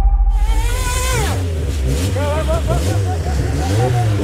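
Electric dirt bike motor whining: a high whine that swells and then falls away about a second in, with men's voices around it.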